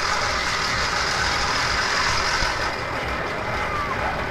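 Steady rushing noise of a sky bike ride on a high steel cable: wind over the microphone mixed with the overhead trolley's wheels rolling along the cable, with faint steady whining tones in it.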